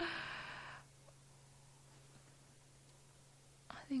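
A person's breathy sigh close to the microphone, starting suddenly and lasting under a second. After it there is only a quiet background with a faint steady low hum.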